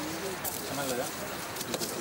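A pigeon cooing low and softly, twice, over steady outdoor hiss and faint murmured voices.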